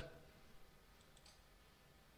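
Near silence with a few faint clicks about half a second and a second and a quarter in: a computer mouse button being clicked.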